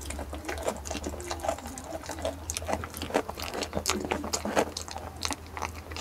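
A goat chewing ripe jackfruit bulbs close to the microphone: quick, irregular wet crunching and clicking of its jaws, over a steady low hum.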